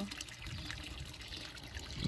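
Thin stream of water from a stone fountain's metal spout trickling and splashing steadily into the water of a stone trough.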